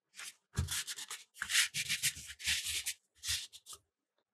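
Fingers rubbing a printed photo flat onto a sketchbook page, a run of short, hissy strokes of skin and paper on paper.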